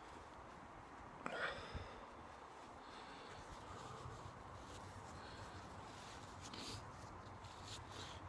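Faint sniffing and breathing of a man with a runny nose after eating a superhot pepper, wiping his nose with a tissue. One short, louder sniff comes about a second in.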